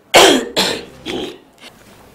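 A woman coughing three times in quick succession over about a second, the first cough the loudest.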